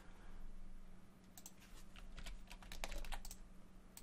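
Faint keystrokes on a computer keyboard: a few scattered taps in short clusters over a low steady hum.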